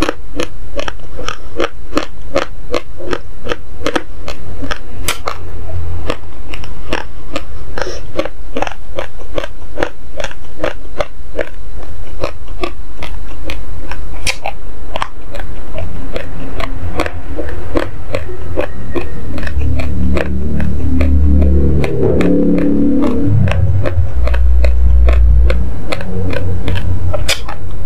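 Raw, uncooked basmati rice being crunched between the teeth with the mouth closed, close to the microphone: steady chewing crunches, about two to three a second. A low rumble sits under the crunching for a few seconds near the end.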